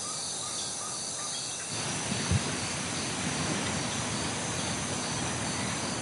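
Outdoor natural ambience. Faint insect or bird chirps repeat about twice a second, then about two seconds in a steady rushing noise takes over, with a single short low thump soon after.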